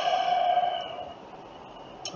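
A man's sigh: a long breathy exhale that fades out a little over a second in.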